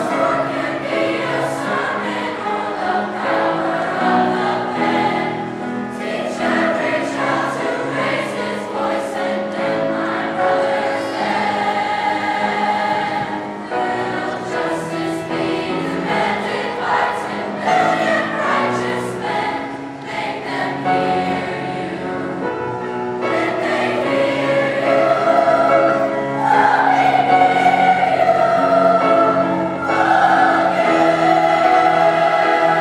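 A large children's choir singing in parts, holding long notes, getting louder in the last few seconds.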